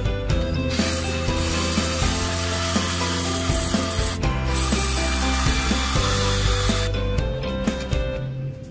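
Electric drill boring into a metal tube, running in one long run with a brief pause around the middle, over background music.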